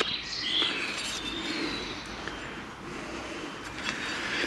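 Outdoor ambience with one short bird chirp about half a second in, over a steady background noise.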